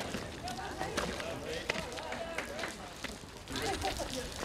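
A runner's footsteps on wet tarmac, light irregular taps a few times a second, under faint background voices.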